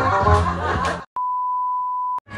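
Party music and voices cut off abruptly about a second in, followed by a single steady, pure electronic beep lasting about a second, edited into the soundtrack at a cut to black.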